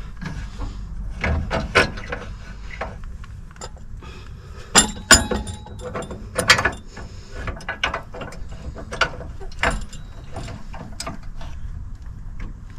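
Caravan drawbar jack being unclamped and its metal stem shifted up for towing: a run of irregular metal clicks and clunks, loudest about five and six and a half seconds in.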